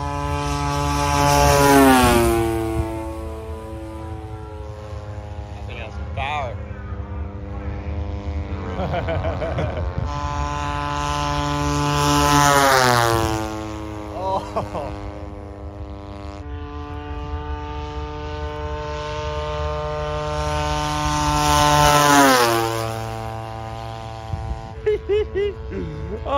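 Propeller-driven radio-controlled model airplane of about 50 pounds making three fast low passes. Each pass swells in loudness, and the engine-and-propeller drone drops sharply in pitch as the plane goes by.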